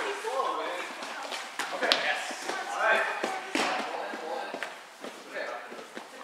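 Indistinct voices of players talking in a large gym, broken by a few sharp knocks of a volleyball being struck or bouncing on the floor.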